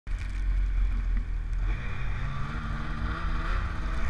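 Arctic Cat M8000 snowmobile's two-stroke twin engine running, its pitch rising steadily from about halfway through as the sled accelerates.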